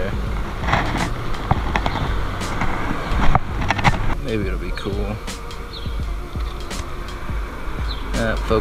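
Street ambience on a body-worn action camera: a steady low rumble of traffic and wind on the microphone, with scattered handling knocks and clicks as the camera is carried and raised, the sharpest a little past the middle.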